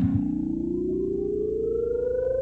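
A synthesized electronic tone gliding slowly and steadily upward in pitch, theremin-like, with a fainter higher tone rising alongside it.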